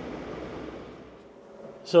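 Steady noise of city traffic and wind, fading away after about a second and a half. A man then starts to speak.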